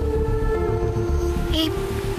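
Dramatic background score: a held chord of sustained synthesizer notes over a low pulsing rumble, the notes shifting about one and a half seconds in.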